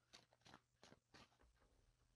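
Very faint clicks and rustles of a tarot deck being handled, the cards slid and fanned apart by hand: about four soft ticks in the first second and a half, then fainter still.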